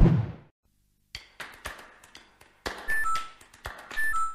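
Animated-video sound effects: a low thud at the start, then a run of sharp clicks, and a short two-note falling phone notification chime about three seconds in.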